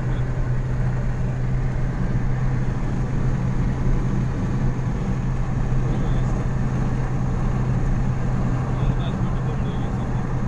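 Steady road noise inside a moving vehicle's cabin cruising on a smooth highway: a constant low engine-and-tyre drone with even rushing noise over it.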